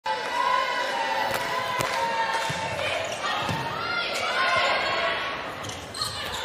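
Volleyball rally on an indoor court: sneakers squeaking on the floor and several sharp hits of the ball, ringing in a large hall.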